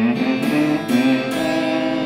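Clean electric guitar, a Fender Stratocaster, playing the notes of an A minor triad on the top three strings (G, B and high E). A few single notes are picked one after another in the first second and a half and are left to ring.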